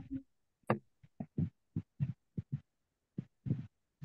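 Broken-up audio from a video call: about a dozen short, clipped bits of sound, each a fraction of a second long, separated by dead silence.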